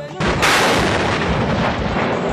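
Truck-mounted multiple rocket launcher firing a salvo: a sudden, loud, dense rush of noise that starts a fraction of a second in and carries on without a break.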